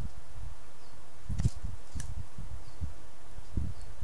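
Carving knife cutting by hand into a small wooden figure, with dull low bumps from the hands working the wood and two sharp clicks about one and a half and two seconds in.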